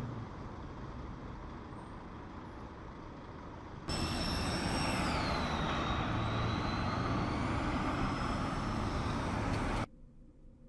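Street traffic noise, faint at first. About four seconds in it turns louder as a tram passes, with a high electric whine that falls in pitch and then holds steady. It cuts off sharply just before the end.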